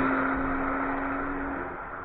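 A car that has just passed close by at speed, driving away: its engine note, which dropped in pitch as it went by, holds steady and fades.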